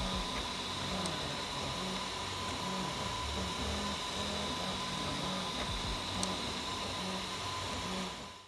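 FDM 3D printer laying down the first layer: the print head's cooling fan hums steadily while the motors give short low whines that start and stop as the head changes direction. There are two faint ticks, about one second and six seconds in.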